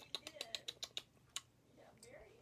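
A quick run of about ten small clicks in the first second and a half, the mouth sounds of someone sipping and tasting a fizzy grapefruit soda.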